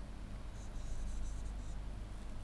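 Stylus scratching on a pen tablet in a quick run of short strokes, over a steady low electrical hum.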